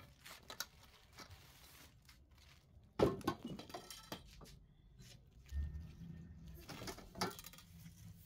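Thin black metal trellis tubes clinking and knocking together as they are handled and fitted, a few scattered sharp taps with the loudest knock about three seconds in.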